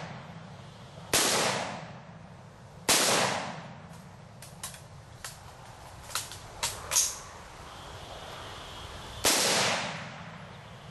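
Bushmaster AR-15 rifle with a 16-inch barrel firing three single shots, about a second in, about three seconds in and near the end, each sharp report trailing off in a short echo. Between the second and third shots come six much fainter sharp cracks.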